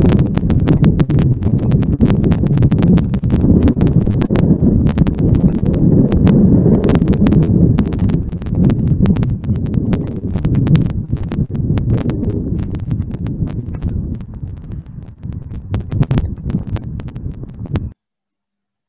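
Outdoor recording of a large flock of golden plovers wheeling overhead: a dense low rush full of sharp crackling clicks. It thins a little near the end and cuts off suddenly.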